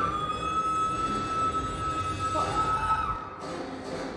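A woman's long scream held at one steady high pitch for about three seconds. A second, lower held scream joins for about the last second of it.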